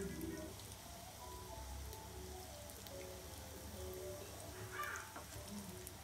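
Soft background music of short melodic notes over the faint, steady sizzle of breadcrumb-coated potato cheese balls deep-frying in hot oil.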